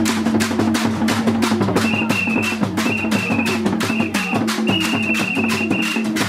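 Live stick drumming on several drums keeping a quick, even beat over low held notes that step up and down in pitch. From about two seconds in, a high steady note sounds in four or five stretches.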